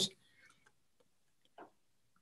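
Almost silent, with a few faint, short clicks.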